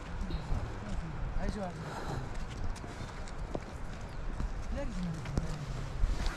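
Footsteps of several walkers on a stony dirt trail, with scattered clicks of shoes on rock and loose stones. Wind buffets the microphone and a voice speaks briefly.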